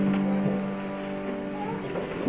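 A held final chord on a piano or keyboard, ringing steadily and fading out about a second and a half in, at the end of a song.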